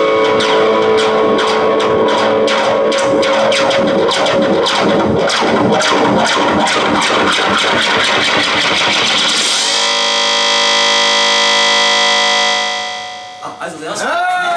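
Electric guitar played through effects pedals: a run of quick picked notes, then a held chord that rings on steadily for a few seconds and fades out near the end.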